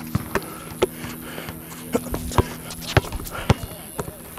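Basketball bouncing on an outdoor hard court: a string of sharp thuds at uneven spacing, about one every half second.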